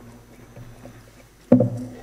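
A steady low hum with faint scattered knocks, then a single loud thump about one and a half seconds in that dies away quickly.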